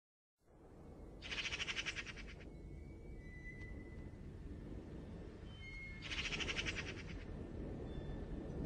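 Faint birdsong over a low, steady rumbling ambience. There are two rapid high trills, each about a second long, with a few thin short whistles between them.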